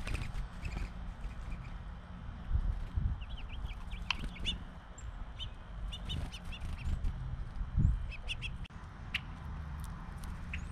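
Small songbirds at a backyard feeder chirping in short, quick runs of high notes, over a steady low rumble with a few low thumps and flutters.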